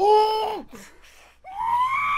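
A man's voice giving two drawn-out, high-pitched wails of exasperation without words; the second starts about a second and a half in, pitched higher and rising slightly.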